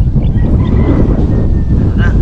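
Wind buffeting the microphone, a loud, constant low rumble, with a faint high steady tone lasting about a second in the middle.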